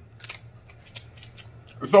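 Snow crab being eaten close to the microphone: several short, sharp, scattered clicks from chewing and mouth smacking and from handling the crab shell, then a voice starts near the end.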